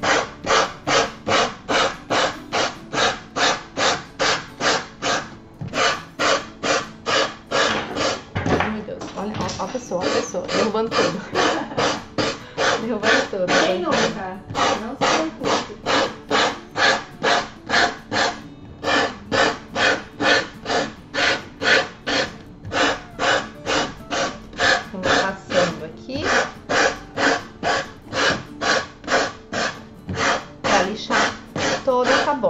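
Hand sanding block rasping back and forth along the edge of a paper-covered board, about three strokes a second, with short pauses every few seconds. The sanding takes off the overhanging scrapbook paper to give the edge a clean finish.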